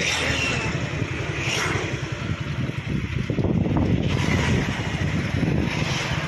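A vehicle moving along a road, a steady low rumble with wind rushing over the microphone.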